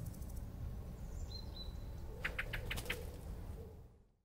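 Faint outdoor ambience: a steady low rumble with a few short bird chirps, one high chirp about a third of the way in and a quick run of about five a little past halfway. It fades out at the very end.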